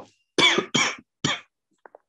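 A person coughing three times in quick succession, followed by two faint mouse clicks near the end.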